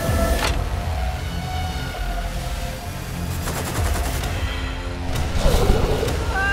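Gunfire over a music score: scattered shots, with a rapid run of shots a little past halfway.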